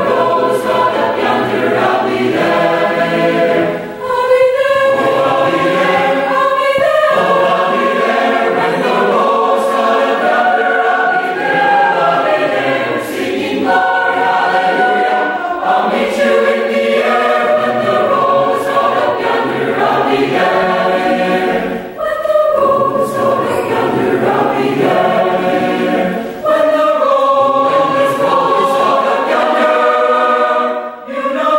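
Large mixed choir of male and female voices singing in harmony, in sustained phrases with brief breaks between them.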